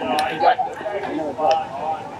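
People talking, with two light clinks of cutlery against a dish, one near the start and one about midway.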